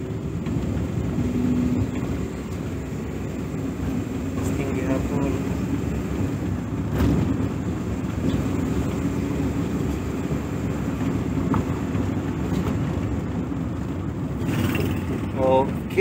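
Steady road and engine noise heard inside the cabin of a Suzuki Every DA64V van being driven and braked, with no brake squeak: the dried-out caliper pins have just been greased.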